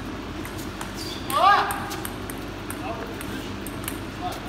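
Table tennis ball clicking off the paddles and table during a rally, with one short, loud shout from a player about a second and a half in that rises and falls in pitch.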